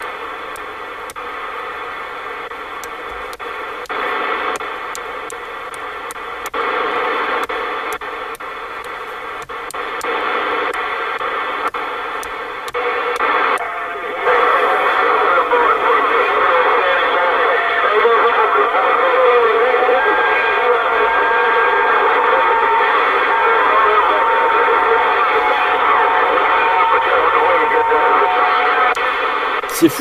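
A President Lincoln II+ CB transceiver receiving the 27 MHz band in AM: hiss with faint, overlapping distant voices and thin steady whistling tones from other stations. About fourteen seconds in, after a change of channel, the signal gets louder and crowded, with several stations talking over each other.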